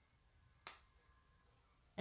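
Near silence, broken by a single short click about two-thirds of a second in.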